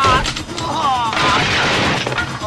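Film fight sound effects: a man's cry falling in pitch, then a loud crash lasting most of a second as a body lands against a table and onto the floor.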